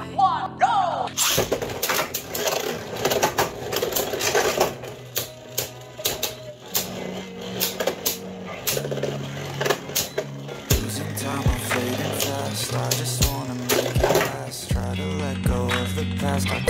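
Beyblade Burst spinning tops battling in a plastic stadium, with many irregular sharp clicks as they strike each other and the stadium wall, under background music.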